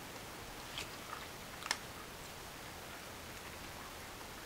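Someone quietly chewing a hard candy: a few faint clicks, the loudest about one and a half seconds in, over low room hiss.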